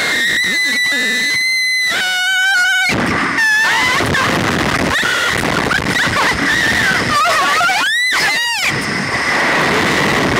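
Two young women screaming on a Slingshot reverse-bungee ride: long held high-pitched screams at first, then shorter yells and a rising-then-falling scream near the end, over a steady rushing noise of air past the ride-mounted microphone.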